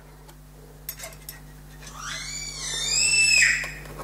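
A pet's long, high-pitched call, beginning about two seconds in and lasting under two seconds, rising and then falling in pitch.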